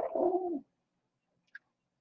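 A single short dove coo in the first half second, then quiet apart from one faint tick about a second and a half in.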